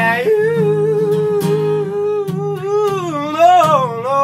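A man sings a long wordless note over strummed acoustic guitar. The note holds level for about two and a half seconds, then dips and climbs back near the end, while the guitar keeps strumming underneath.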